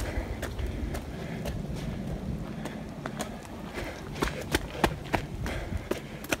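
Hurried footsteps on a wet dirt trail, an uneven series of steps about two a second, over a steady low rumble.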